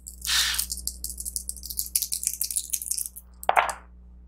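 A handful of polyhedral dice, a d8 and two d4s, rattled and rolled into a dice tray: a quick clatter of many small clicks lasting about three seconds.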